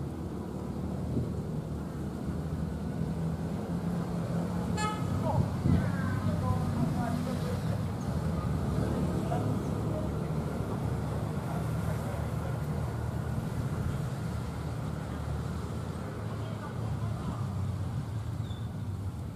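A diesel-electric locomotive drawing a passenger train slowly into a station, its engine a steady low drone that grows a little louder as it approaches. A short horn toot sounds about five seconds in.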